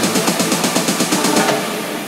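Techno DJ mix in a build-up: fast, evenly repeating hits with the bass taken out, thinning and getting quieter after about a second and a half.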